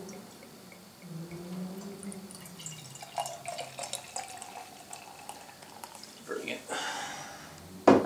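Beer being poured from a glass bottle into a stemmed glass, a steady pouring and gurgling of liquid. A sharp knock comes near the end.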